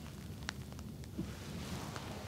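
Room tone with a steady low hum, a single sharp click about half a second in, and a soft rustle near the end.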